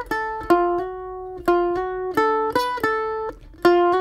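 F-style mandolin playing a quick single-note bluegrassy lick in D: about ten picked notes with a slurred hammer-on from the flatted third to the natural third (F to F sharp on the D string), one note held about a second in.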